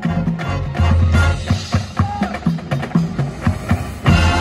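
Marching band music with frequent drum and percussion hits over sustained low bass notes.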